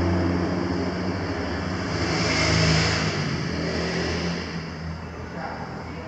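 A car driving past: a rush of noise that swells to its loudest about halfway through and then fades, over a steady low hum.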